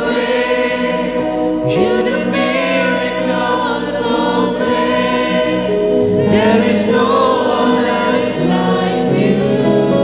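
A live worship band: several voices singing a praise song together over keyboard and acoustic guitar, with long held notes.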